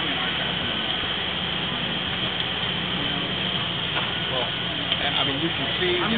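A steady rushing noise over a low hum, with faint voices talking in the background about four seconds in.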